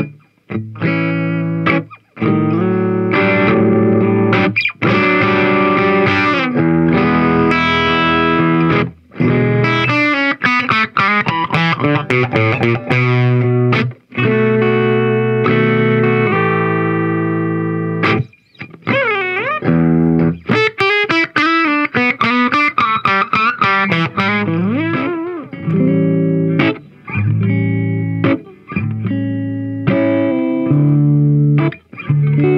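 Electric guitar played through a 1968 Fender Bassman amplifier modified for high gain, with an overdriven tone. Chords and single-note lines with string bends, broken by several short pauses.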